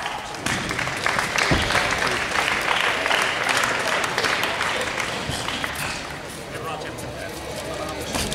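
Audience applauding, with voices shouting over it, the clapping easing off about six seconds in.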